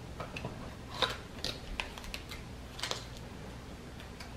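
Small cardboard product boxes and a cosmetic compact being handled: a few scattered light clicks and taps as the highlighter goes back into its box and the next item is picked open.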